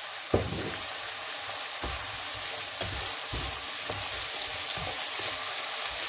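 Oyster mushrooms sizzling in a reduced oyster-sauce glaze in a frying pan, with a steady hiss. A wooden spatula stirs them and knocks against the pan several times, most sharply about a third of a second in.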